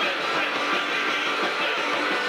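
Live punk rock band playing: electric guitars and drums, loud and continuous.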